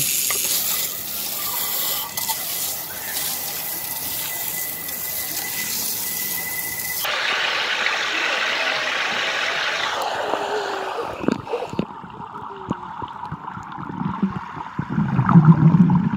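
Shower water spraying in a steady hiss as it rinses sand off feet. About seven seconds in it cuts sharply to the rush of a pool fountain's jet splashing into the water at water level. Near the end it turns to a dull, muffled underwater sound.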